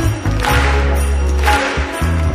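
Kirtan music between sung lines: a steady low sustained drone with percussion strokes over it.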